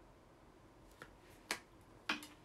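Two short, faint clicks about half a second apart, the second sharper, over quiet room tone.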